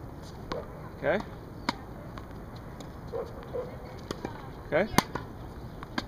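Sharp pops of a tennis ball on a hard court: a clear strike under two seconds in, a few faint ticks, then the loudest pop about five seconds in.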